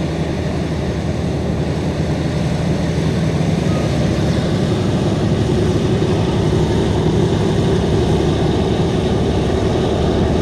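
Boeing B-17 Flying Fortress's four Wright R-1820 Cyclone nine-cylinder radial engines running at taxi power, a steady low propeller-and-engine rumble that grows slightly louder as the bomber rolls past.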